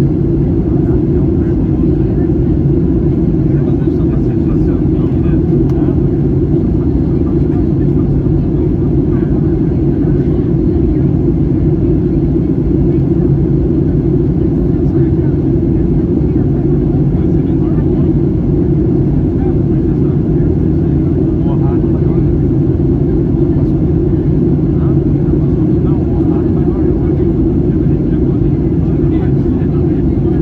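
Steady low cabin drone of a Boeing 737-800 on approach, the engine and airflow noise heard from inside the cabin at a window seat behind the wing.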